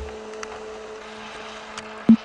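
Reel-to-reel tape machine running: a steady hiss with a low hum held on two tones and a couple of faint clicks.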